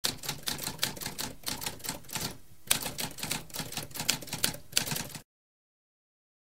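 Typewriter typing sound effect: rapid, irregular key strikes, with a brief pause about two and a half seconds in, then more typing that stops abruptly a little after five seconds.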